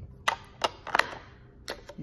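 About five sharp clicks and taps of small plastic cosmetic packaging being handled and closed, spread unevenly through the two seconds.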